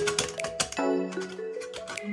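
Background music: a light melody of held notes stepping up and down, with quick sharp clicks running through it.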